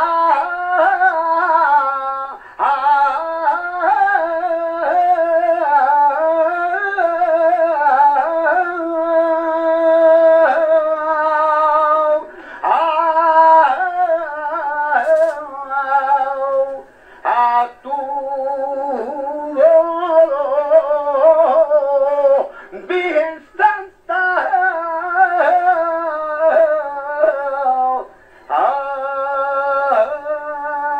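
A saeta sung unaccompanied by a solo voice to the Virgin's stopped float, in long, wavering, ornamented phrases broken by brief pauses for breath.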